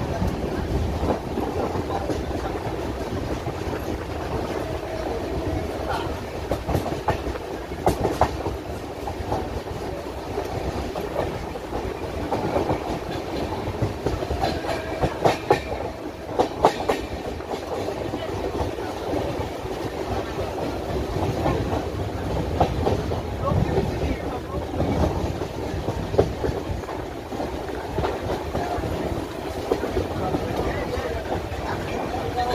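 Indian Railways passenger express running at speed, heard from an open coach window: a steady rumble and rush of wheels and air, with clusters of sharp clickety-clack knocks as the wheels cross rail joints, heaviest near the middle.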